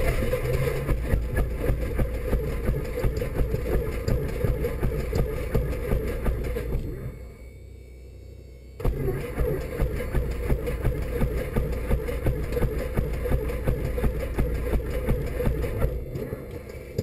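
Light aircraft's piston engine running at idle just after starting, with an even pulsing beat, heard inside the cockpit. About seven seconds in it dies away and is quiet for nearly two seconds. It then catches again abruptly and runs on at idle.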